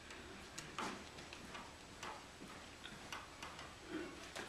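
Quiet room with faint, irregular clicks and light taps.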